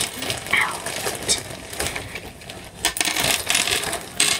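Small hair elastics clinking and rattling in a clear plastic tub as it is handled, a run of light, irregular clicks.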